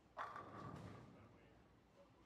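Bowling ball striking the pins: a sudden crash about a quarter of a second in, with a clatter that dies away over about a second.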